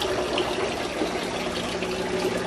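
Water running steadily into an aquarium, splashing and trickling, over a low steady hum.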